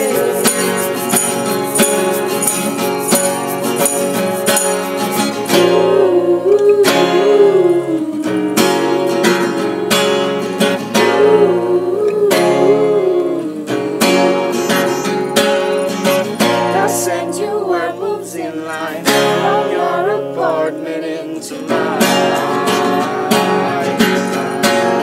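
Acoustic folk-pop performance: two acoustic guitars strummed under several voices singing together, with a light jingling during the first few seconds.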